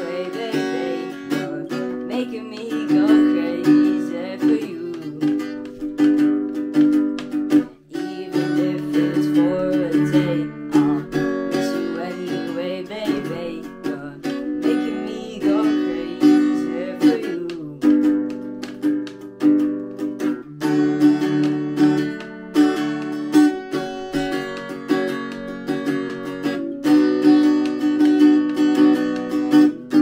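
Acoustic guitar strummed in steady repeated chords, with a brief break about eight seconds in.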